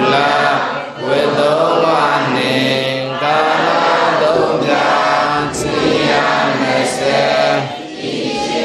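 Several voices chanting in unison, a steady recitation in phrases of a second or two over a held low note, in the manner of Buddhist devotional chanting.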